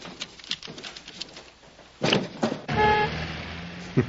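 Street traffic from a film soundtrack: a vehicle engine rumbling and a car horn sounding once, held for about a second, in the second half.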